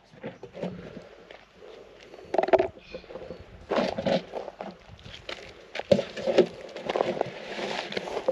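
A plastic drum being handled on gravel: its screw lid twisted off and set down, then the drum scraped and shifted, in a few short scuffs and knocks with crunching steps underfoot.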